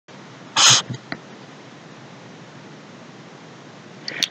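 A single short, sharp breathy burst from a person close to the microphone, like a sneeze or forceful exhale, about half a second in. Two faint clicks follow, then only a steady hiss.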